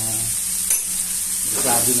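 Diced onions and tomatoes sizzling in a frying pan over a gas burner, with a steady high hiss, as shrimp paste is stirred into them.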